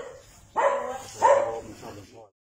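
A dog barking twice, the two barks under a second apart.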